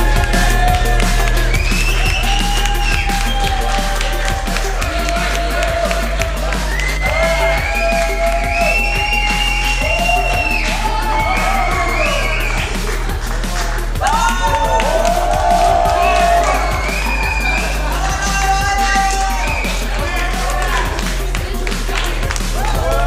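Music with a sustained low bass and a sung melody over it, with some crowd cheering.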